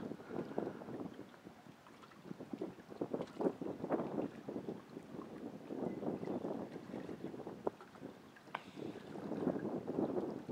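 Choppy river water lapping and splashing against shoreline rocks in irregular slaps that swell and fade.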